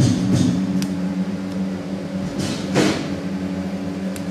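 Steady hum of food-processing machinery in a tofu production room, with a short rushing noise about two and a half seconds in.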